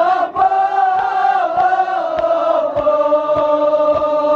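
A group of men chanting a nauha (Shia lament) together on long held notes, with a steady beat of palms striking chests (matam) about every 0.6 seconds.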